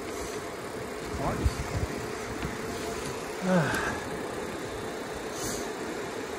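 Steady rolling noise of an e-bike coasting on asphalt, tyre noise and wind on the camera microphone, with a constant hum underneath.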